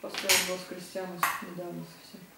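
Tableware clinking twice, about a second apart, with a faint voice underneath.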